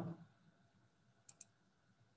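Two faint button clicks close together, about a second and a quarter in, advancing the slideshow by one bullet; otherwise near silence.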